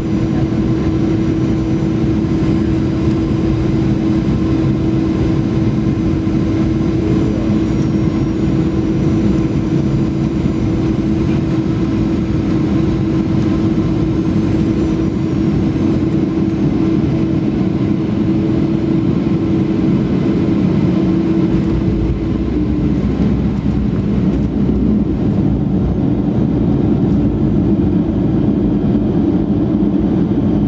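Cabin noise of a Boeing 737-800 on final approach: the CFM56-7B jet engines give a steady loud hum under a rush of air. About 22 seconds in the hum shifts and a deeper rumble takes over as the airliner touches down and rolls on the runway.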